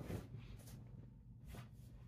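Faint breathing of a man doing push-ups: a few soft puffs of breath over quiet room tone.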